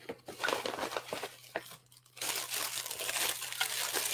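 Wrapping crinkling and rustling as something is unwrapped by hand, in two stretches with a short pause about two seconds in.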